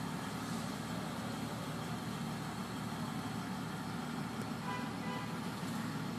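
Steady low hum and hiss of background noise inside a car cabin, with no distinct events.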